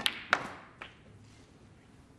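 Snooker shot: the cue tip clicks on the cue ball, and about a third of a second later comes the louder, sharp crack of the cue ball striking the black, followed by a lighter knock just under a second in as the balls run on.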